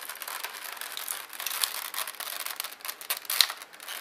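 Clear plastic clamshell packaging being pried open by hand: continuous crinkling and crackling of the thin plastic, with a louder sharp crack near the end.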